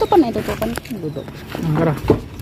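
Mostly people's voices talking, with a couple of light clicks about halfway through.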